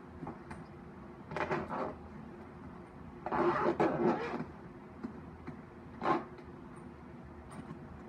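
Zipper of a viola case being pulled closed: a short rasp, then a longer rasping run about three seconds in, and another short rasp near six seconds.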